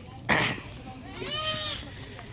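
A short noisy rush about a third of a second in, then a young child's high-pitched, drawn-out vocal sound that rises and falls for about a second.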